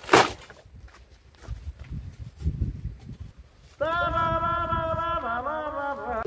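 A styrofoam board being chopped with a hand tool: a sharp crunch at the start, then rougher scraping crunches as the foam breaks. About four seconds in, a loud held pitched note with overtones comes in and steps down once near the end.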